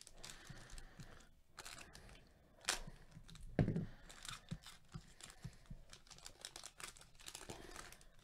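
Faint crinkling and tearing of a trading-card pack's plastic wrapper as it is handled and pulled open, with a couple of louder crackles around three to four seconds in.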